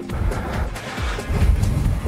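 Fitness workout music playing in the background with a steady beat.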